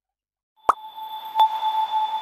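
Short chime sting for a section title: a soft pop, then bell-like tones struck again twice, each strike adding notes that ring on.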